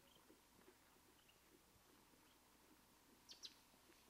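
Near silence with faint, regular hoof falls of a horse moving on a soft dirt track. About three seconds in come two short, high bird chirps in quick succession, the loudest thing heard.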